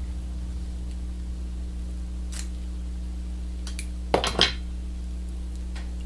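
Dyed black pheasant tail fibres being handled and separated from the quill for a fly-tying tail: a few faint clicks, then a brief crisp double rustle about four seconds in, over a steady low hum.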